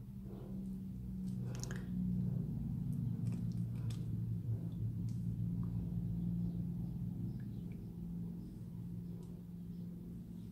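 A low, steady hum with a few faint light clicks over it.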